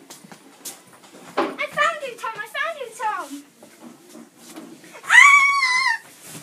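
A child's high voice calling out in a rising and falling singsong, with light knocks and steps between, then a loud high-pitched cry held for nearly a second near the end.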